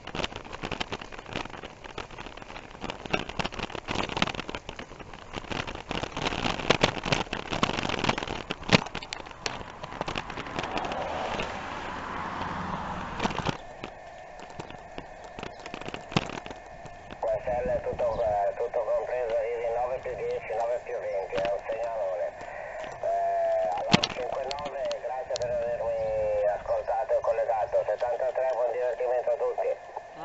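Wind and road rush while cycling, then from about halfway a man's voice coming through a handheld DMR radio's speaker, thin and narrow-sounding, as the distant station transmits over the DMR MARC network.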